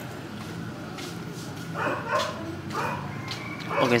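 A dog barking twice in short barks, about two seconds in and again under a second later, over a steady low hum.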